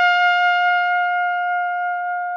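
Trumpet holding one long, steady, high note that slowly gets softer.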